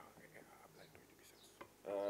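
Faint whispering: a man murmuring low beside the microphones. Full-voiced male speech resumes just before the end.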